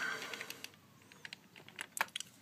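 Computer keyboard keystrokes: a few separate key clicks in small clusters as a short command is typed.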